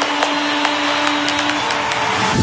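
Handheld hair dryer running steadily: an even rush of air with a steady motor hum.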